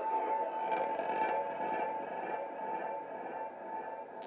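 Live ambient electronic music with electric guitar fading out. A steady held tone lasts throughout, while softer layered tones die away around it.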